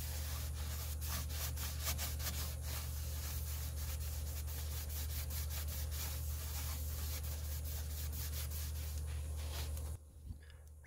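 A paper towel rubs sanding sealer onto the inside of a shoestring acacia bowl as it turns on the wood lathe, giving a quick, rhythmic rubbing over the lathe motor's steady low hum.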